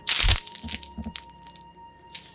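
A loud, short crackling crash right at the start, followed by a few sharp clicks and rattles, over soft background music holding a steady note.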